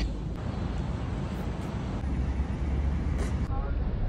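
Outdoor street background noise with traffic: a steady hiss under a low rumble that swells about halfway through and eases off a second or so later.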